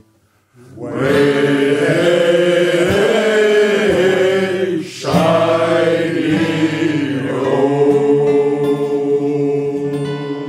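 A group of men singing a sea shanty together, loud and in chorus. The singing starts just under a second in after a brief pause, breaks off for a moment halfway, and ends on a long held chord.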